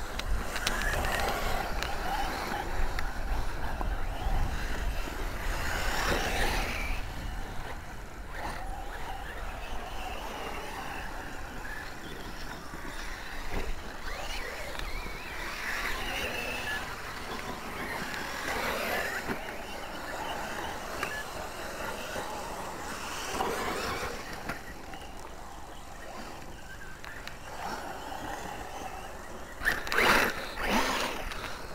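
Radio-controlled off-road buggy driving over rough grass and dirt, its motor rising and falling with the throttle, with several louder bursts as it speeds up.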